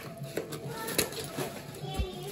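Scissors snipping through packing tape on a cardboard box: a handful of sharp cuts about half a second apart, with music playing faintly underneath.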